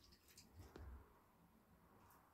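Near silence: quiet background with two or three faint clicks in the first second.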